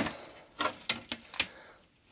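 Several sharp clicks and knocks of a circuit board against its plastic case as the Amiga 600 mainboard is tilted and worked out of the bottom shell.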